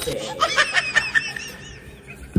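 A man laughing: a quick run of short, high giggling notes that rises and falls and fades out near the end.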